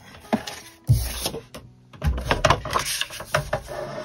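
A plastic scoring board being set down and shifted into place on a desk, with a sheet of cardstock slid against it: a knock about a second in, then a run of clicks and rattles.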